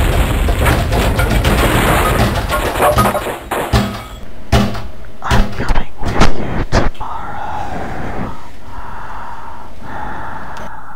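A loud rushing noise, then about six heavy thumps in quick succession, then a quieter steady hum.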